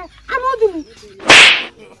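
Brief voice, then a sudden loud burst of noise lasting under half a second about a second and a quarter in.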